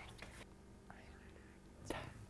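A young child whispering into an adult's ear, faint and breathy, with a short click near the end.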